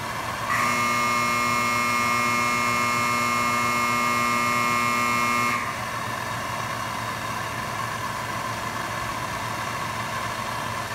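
Hand-held MAPP gas torch burning with a steady hiss while it heats a bolt. From about half a second in to about five and a half seconds, a louder steady buzzing tone plays over it and then cuts off suddenly.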